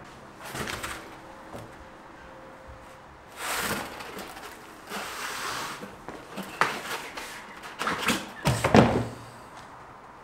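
An arrow being pulled out of a layered foam archery target and handled: a series of separate scraping rustles and knocks, the loudest near the end.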